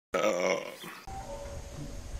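A short sound clip over the channel's intro logo: a wavering vocal sound lasting about half a second, which stops abruptly. About a second in it gives way to low room noise.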